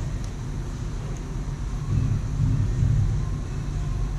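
A steady low machine hum and rumble, with a faint click shortly after the start.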